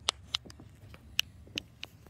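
About half a dozen sharp, short clicks or taps spread across two seconds, the loudest near the start and about a second in, over a low steady hum.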